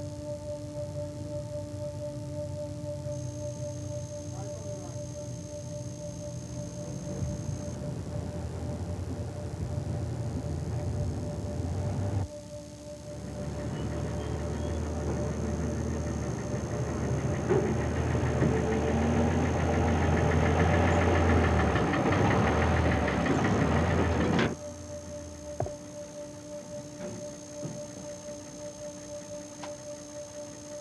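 Military truck engine running and growing louder, over a sustained droning music tone. The engine noise drops out briefly about 12 seconds in, returns louder, and cuts off abruptly about 24 seconds in, leaving the drone.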